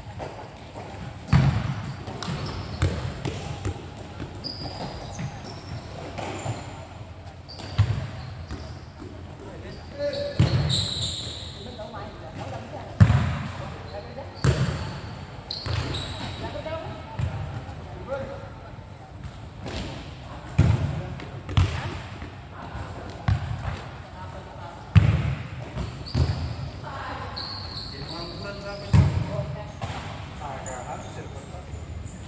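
Futsal ball being kicked and struck on a sport-tile court, irregular thuds a few seconds apart that ring under a large roof, with players' voices calling out.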